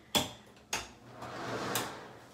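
Interior door being handled: two sharp clicks about half a second apart, then a short rustle that grows louder.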